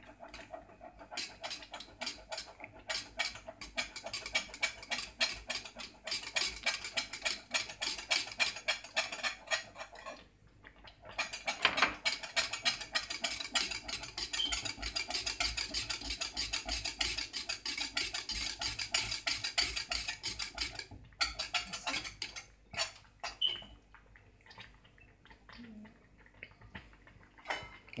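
A spoon stirring thick cornmeal porridge in a metal saucepan, with rapid scraping and clicking against the pot. The stirring pauses briefly about ten seconds in and grows sparser over the last several seconds.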